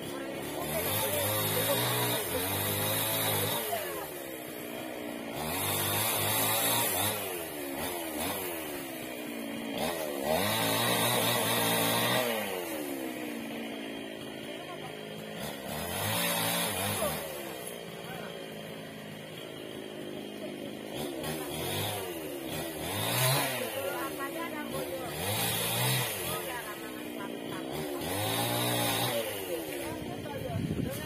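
Chainsaw working through teak wood. Its engine revs up and down in repeated surges every few seconds, the pitch dipping under load and rising again.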